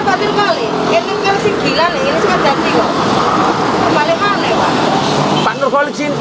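Indistinct talking over the steady buzz of electric hair clippers cutting hair.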